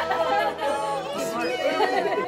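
Several people chattering at once, overlapping voices with no single clear speaker, over background music.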